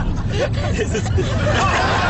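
Steady low rumble of road noise inside a moving car, with bursts of laughter and muffled voices over it.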